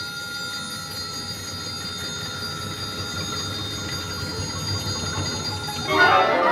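Quiet passage of contemporary orchestral music: sustained ringing bell-like tones held steady over a low rumble. A loud full-orchestra entry breaks in at the very end.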